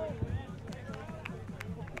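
Faint crowd and player voices out on an open beach sports field, with a few light clicks.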